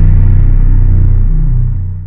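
Deep, loud bass rumble of a news channel's animated logo intro sting, steady and then fading out near the end.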